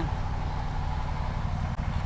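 Low, steady background rumble with no voice, its energy mostly in the deep bass, and a brief drop in level near the end.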